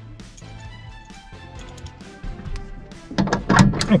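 Background music playing quietly, with a man's voice coming in loudly in the last second.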